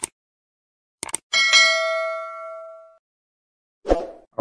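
Subscribe-button sound effect: quick mouse clicks, then a bright notification-bell ding that rings with several tones and fades out over about a second and a half. A short thud comes near the end.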